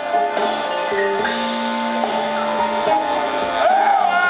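Live blues band playing a slow ballad, a brass horn taking a solo in long held notes over drums and guitar, heard through the concert PA.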